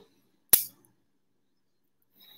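A single sharp click or knock about half a second in, dying away quickly, with near silence around it.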